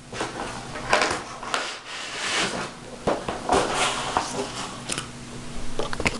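Packaging being handled: irregular rustling and crinkling of plastic wrap and cardboard, with scattered sharp clicks and knocks.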